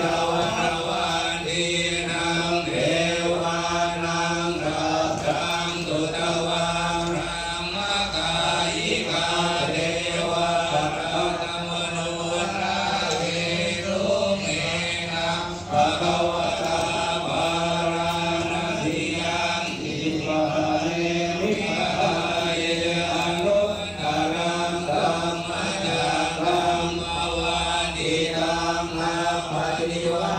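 Thai Buddhist monks chanting in unison: a continuous, rhythmic recitation held near one pitch, with no pauses. It is the blessing chant over the flower water, which is being consecrated with dripping candle wax for the holy shower.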